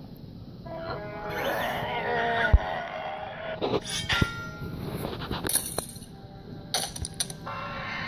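Action soundtrack of a stop-motion toy-robot fight, played through a TV speaker: background music with several sharp metallic clinks and clanks scattered through it.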